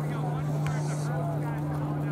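A steady low mechanical hum runs throughout, with faint chatter of distant voices over it and a brief click about two-thirds of a second in.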